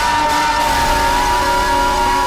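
Harsh noise music from a prepared electric guitar's feedback loop: one loud held tone wavering slightly in pitch, over lower held tones, a rough low rumble and dense hiss, at an unchanging loudness.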